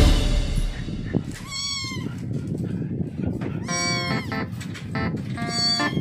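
One-month-old Persian kittens mewing, three short high-pitched mews spread across a few seconds.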